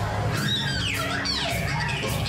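Live electric guitar with pitch slides going up and down, over a steady bass line and a beat.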